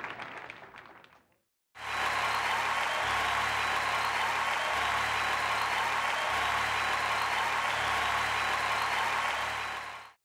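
Studio audience applause fading out over the first second or so. After a brief gap, a loud steady sound bed of even noise with a low, shifting bass begins and cuts off at the end.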